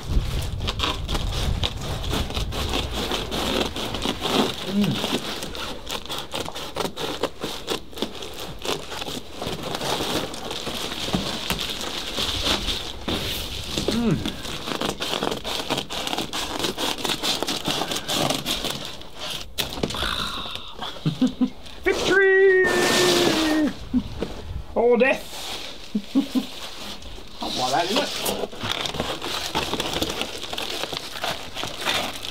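Foil-faced bubble insulation crinkling and crackling as it is cut and handled, a steady run of small crackles.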